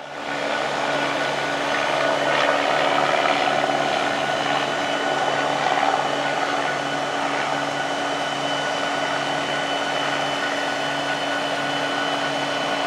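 A jet airplane passing overhead: a steady rushing noise that swells over the first few seconds and then eases off slightly, over the low steady hum of idling Norfolk Southern diesel locomotives.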